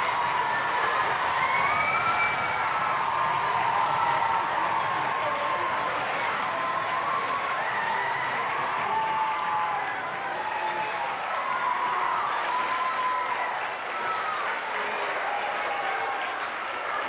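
Crowd of students and staff applauding and cheering in a school gymnasium: steady clapping with many voices calling out over it, easing off slightly in the second half.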